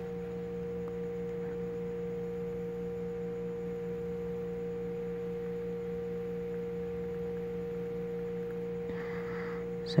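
A steady, unchanging hum made of a few pure tones, the strongest fairly high-pitched and another lower one, over faint background hiss.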